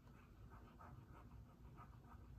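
Near silence: room tone with a low hum and faint, irregular scratchy sounds.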